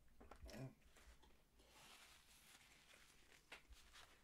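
Near silence, with the faint sounds of a man biting into and chewing a wrapped burrito: a few small clicks in the first second, then a soft rustle in the middle.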